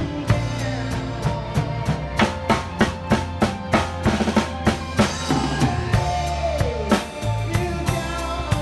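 A live band playing a rock ballad with the drum kit loud and close: kick drum, snare and cymbals keep the beat over bass and held chords. Around the middle comes a busy run of closely packed drum strokes, and the drummer moves around the toms near the end.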